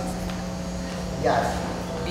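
Faint background voices with one short spoken sound about a second in, over a steady low electrical hum.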